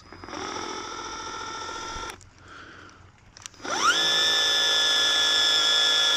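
Battery-powered Gloria Multijet 18V medium-pressure sprayer pump drawing water from a plastic bottle on its inlet. Its motor whines steadily for about two seconds, drops away briefly, then starts again with a rising whine and settles into a steady, louder whine as it sprays.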